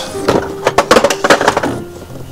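A cardboard shipping box and its cardboard packing insert being handled and set down: a quick run of knocks, taps and scrapes through the first second and a half, quieter near the end.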